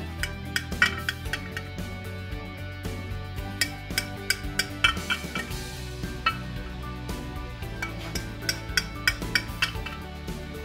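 Knife clicking and scraping against a glass baking dish while cutting a cake, in many short irregular taps. Background music plays steadily under it.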